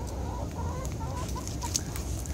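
Backyard chickens clucking: a string of short clucks over a steady low rumble.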